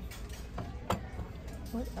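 A single sharp click about a second in as goods are handled on a shop shelf, over a steady low hum.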